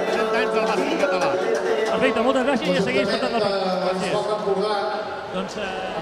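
Speech only: several people talking at once, overlapping voices.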